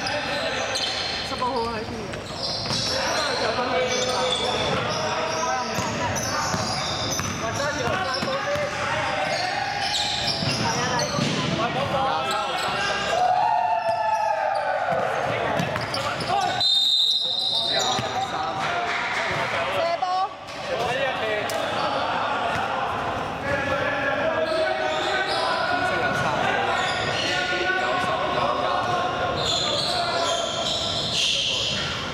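Indoor basketball game in a large sports hall: a basketball bouncing on the hardwood floor, with players' voices calling and shouting throughout. A short, high, steady tone sounds a little past the middle.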